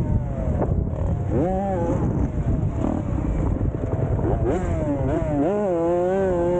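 Dirt bike engines running, their pitch rising and falling with the throttle and holding steadier near the end.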